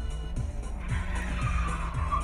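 Music plays throughout, and from about a second in car tyres skid with a rising, wavering squeal during a near miss with a crossing car.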